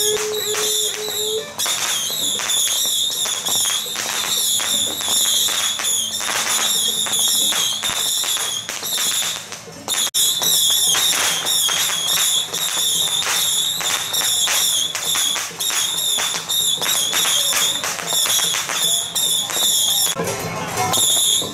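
Taiwanese temple-festival percussion of drums, gongs and cymbals playing a fast, continuous beat of sharp strikes under a steady cymbal shimmer, with one held note in the first second and a half.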